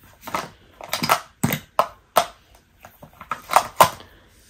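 Plastic makeup compacts and cases clacking against one another as a hand rummages through a packed makeup bag: a string of irregular sharp clicks, loudest near the end.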